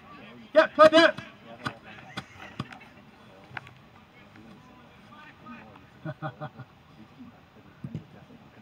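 Voices shouting across a football pitch during a game: one loud, high call about half a second in, then a few shorter calls around six seconds, with scattered sharp knocks between them.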